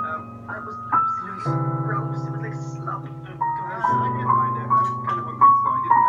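A digital piano played four hands: sustained low chords that change every second or two under a melody of single notes moving in small steps.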